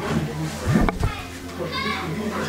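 A woman wailing and crying out with emotion, her voice rising to a high, wavering cry near the end.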